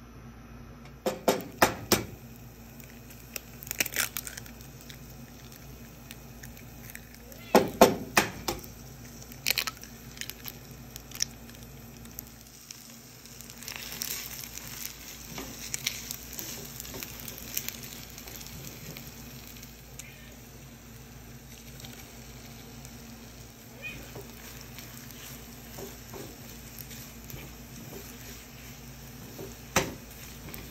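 Eggs and leftover rice frying in a nonstick pan: a few sharp knocks in the first ten seconds, then a light sizzle while a plastic spatula scrapes and stirs the eggs through the rice.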